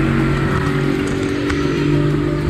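Boat outboard motor running at a steady low speed, a constant engine drone.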